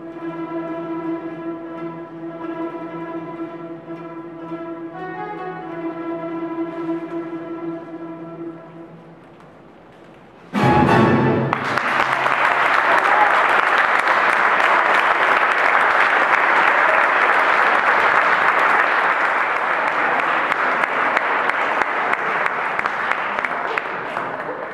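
Spanish plucked-string orchestra of bandurrias, lutes and guitars with double bass holding a long sustained closing chord that fades out after about nine seconds. Then the audience breaks into applause suddenly and claps steadily to the end.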